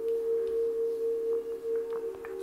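Background ambient music: a steady drone of a few held low tones, with no beat.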